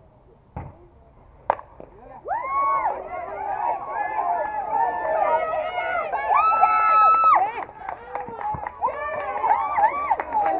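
A softball bat hits a slow-pitched ball with a sharp crack about a second and a half in, and players and spectators then break into loud overlapping shouts and calls as the batter runs, with one long held shout a few seconds later.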